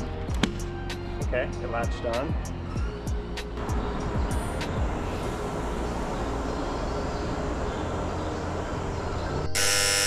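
Background music over steady ambient sound with a few clicks, then near the end a loud 'wrong answer' buzzer sound effect lasting about a second, marking a failed fast-charging attempt.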